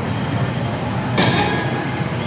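Loud, steady din of a pachislot parlor: many slot machines' sound effects blending into one continuous roar, with a sharp clattering burst a little over a second in.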